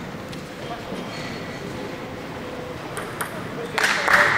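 Table tennis ball clicking off the bats and table in a few sharp, separate hits, in a reverberant sports hall, with a louder burst near the end.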